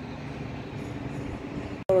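Distant city traffic, a steady low hum, cut off abruptly near the end.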